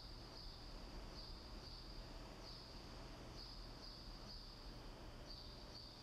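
Faint cricket trill, a high pulsing chirp repeating about twice a second, over a low steady hum.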